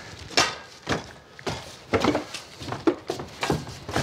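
About ten irregular knocks and light thuds of things being handled and set down on hard surfaces during a clean-up.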